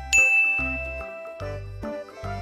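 A bright chime sounds once just after the start and rings out, fading over about a second, over background music with a repeating bass line.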